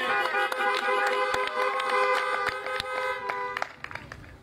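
Several car horns honking at once in overlapping long and short blasts of different pitches, cutting off about three and a half seconds in. Cars at a drive-in service sound their horns in place of applause.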